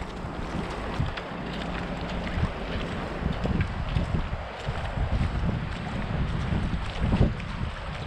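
Footsteps splashing through shallow, ankle-deep river water, in irregular steps, with wind buffeting the microphone.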